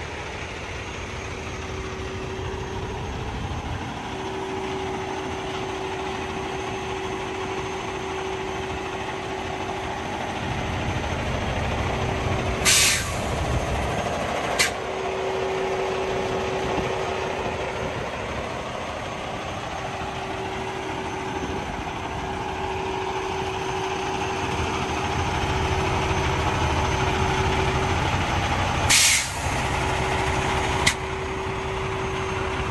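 Heavy diesel truck idling with a steady low rumble and hum. A short, sharp burst of air hiss comes twice, about 13 seconds in and near the end, each followed by a click about two seconds later.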